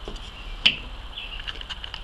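A single sharp click as a plastic digital caliper is set down on a tabletop, followed by a few much fainter small ticks.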